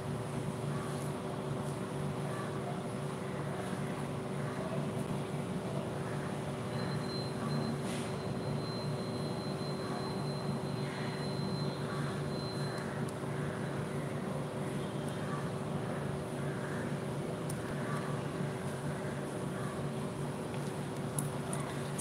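Steady mechanical hum with a few held low tones, unchanging throughout; a faint high tone sounds for several seconds in the middle.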